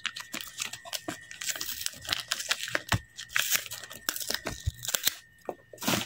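Plastic wrapper of a Panini NBA Hoops card pack and its paper packaging crinkling and rustling as they are handled, with irregular crackles throughout.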